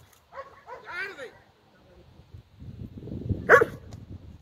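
A working dog gripping a helper's bite suit lets out high-pitched whining yips about half a second and a second in. Low rumbling builds over the last second and a half, topped by one sharp, loud bark near the end.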